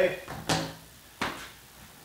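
Two short knocks, about half a second and a second in, as a shop vac hose is pulled off its PVC fitting on a bucket-top dust separator and set aside.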